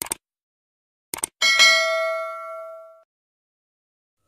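Subscribe-button animation sound effect: short clicks, then a single bright bell ding about a second and a half in that rings out and fades over about a second and a half.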